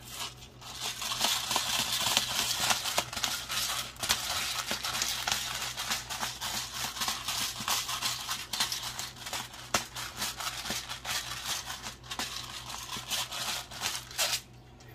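Pepper mill grinding black pepper, a long run of fine crackling with a short break about four seconds in.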